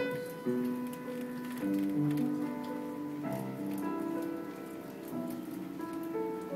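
Live solo piano playing a melody over chords, a medley of short excerpts from requested songs.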